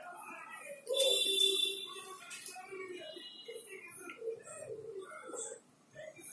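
A man's voice, speaking in short phrases, with a loud drawn-out vocal sound about a second in that slides down a little and is held.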